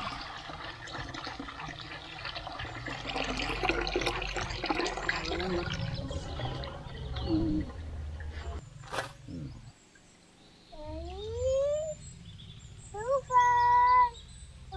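Blended watermelon juice poured from a pot through a steel strainer into a steel vessel: a steady splashing pour that ends after about eight seconds. Voices follow near the end.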